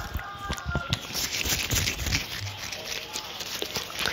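Latex-gloved hands handling a small bottle close to the microphone: soft glove crinkles and scattered small clicks.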